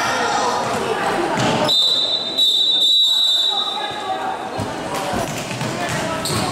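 A referee's whistle blown in one long, steady blast a little under two seconds in, lasting about two seconds, over spectators' chatter and a ball thumping on the sports hall's wooden floor.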